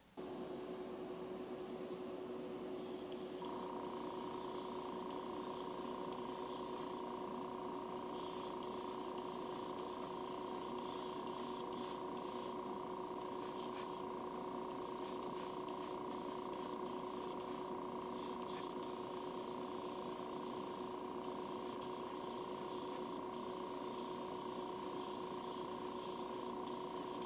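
Gravity-feed airbrush spraying translucent Spectraflame paint in many short bursts, a high hiss coming and going, over the steady hum of a motor that is joined by a second, higher tone a few seconds in.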